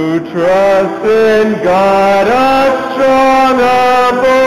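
Church congregation singing in unison, slow held notes that step to a new pitch about once a second.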